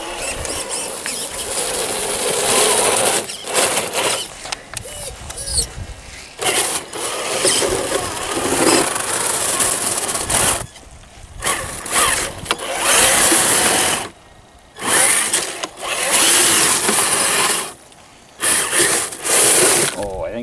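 Traxxas TRX-4 RC crawler's electric motor and geared drivetrain whining in low gear on a 3S LiPo battery, in long bursts of throttle with brief stops, its tyres churning through soft, slushy snow.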